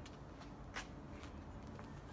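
Faint, steady background noise with a few soft clicks, the loudest just under a second in.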